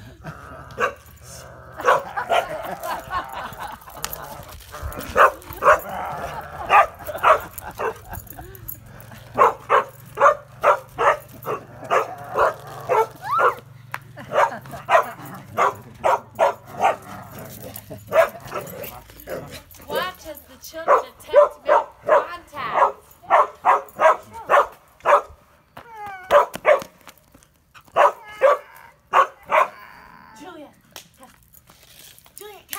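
A dog barking in long runs of short, quick barks, several a second, with brief pauses between runs.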